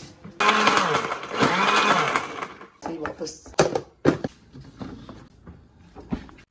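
Countertop blender running in two short goes of about two and a half seconds in all, its motor pitch rising and falling under the load of a strawberry and date shake. Then come a few sharp knocks and clicks of the blender jar and lid being handled.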